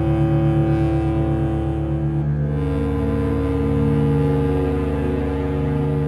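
Background music with sustained low notes over a pulsing bass; the chord changes about two seconds in.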